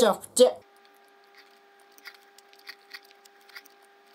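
A rhythmic run of repeated voice sounds breaks off about half a second in. After it come faint, scattered clicks and soft scrapes of a small plastic spoon working in a plastic cup of almond jelly, over a faint steady hum.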